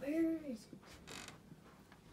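Closet door hinge creaking as the door swings open: one short creak that rises and then falls in pitch. A brief rustle follows about a second later.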